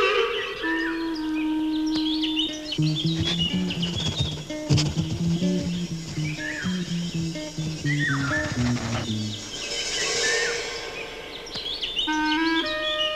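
Cartoon underscore of woodwinds with chirping bird calls mixed in; a low melody of short separate notes comes in about three seconds in and stops near nine seconds.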